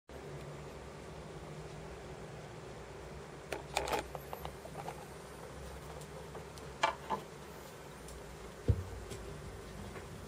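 Faint low hum and hiss from a turntable playing the silent lead-in groove of a vinyl record, with a few scattered clicks and pops before the music begins.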